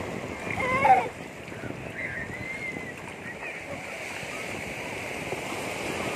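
Small waves washing steadily over shallow sea water, with light splashing. A brief voice is heard just before a second in, the loudest moment.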